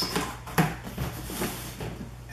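Cardboard shipping box being handled and its seam worked open by hand: a few scrapes and knocks, the sharpest about half a second in.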